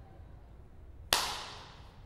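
A single sharp crack about a second in, with a tail that dies away over most of a second.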